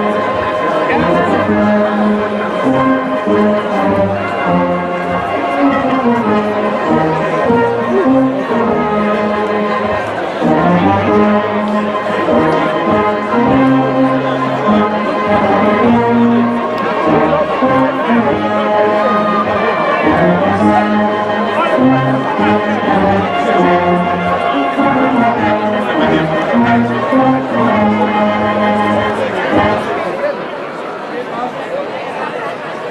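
Brass band music playing in a steady rhythm with a bass line, with crowd chatter beneath; the music stops right at the end.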